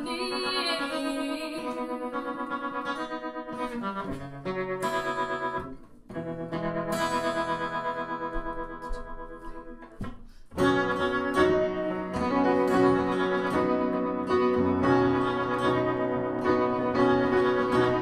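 Strummed acoustic guitar and upright piano playing an instrumental passage together. The music thins briefly about six seconds in and again about ten seconds in, then comes back fuller.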